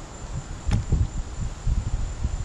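Wind buffeting the microphone in irregular low gusts, over a steady high-pitched drone of crickets. A single sharp click sounds about a second in as the trolling motor is swung on its mount.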